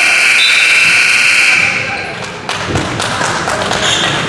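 Gymnasium scoreboard buzzer sounding one steady electronic tone that cuts off about two seconds in during a stoppage in play. Scattered thuds on the hardwood court follow over the murmur of voices in the gym.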